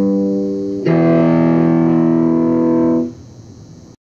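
Guitar chords ringing out: one chord held, then a new chord struck just under a second in and held until it is cut short about three seconds in, leaving a faint tail.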